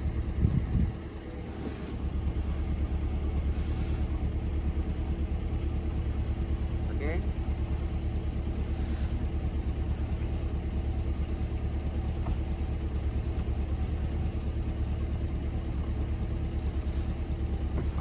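Corvette Stingray's 6.2-litre V8 idling steadily with an even low pulse while the power-retractable hardtop closes, a few faint mechanical clicks from the roof mechanism over it.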